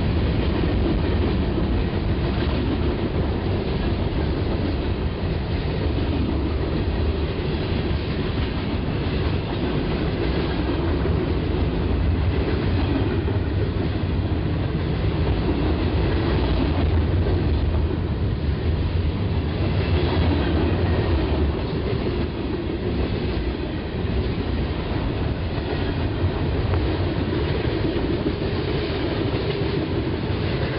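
Union Pacific manifest freight train's cars passing close at speed: a steady, loud rolling rumble of steel wheels on rail that never lets up.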